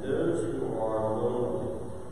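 A congregation reciting a prayer aloud together in unison, many voices blending in a reverberant church.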